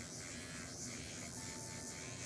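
Electric nail drill running steadily, its bit buffing the shine off a press-on nail.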